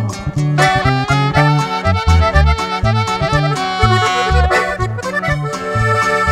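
Norteño instrumental break between verses: accordion playing the melody over bajo sexto strumming and an electric bass line in a steady rhythm.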